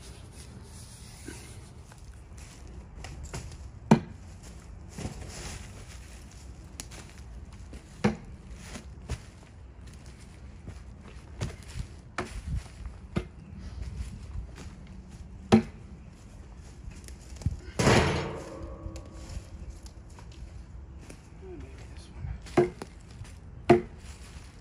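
Council Tool pickaroon's steel head struck into logs: sharp wooden knocks every few seconds, with one longer, louder clatter with some ringing about three-quarters of the way through.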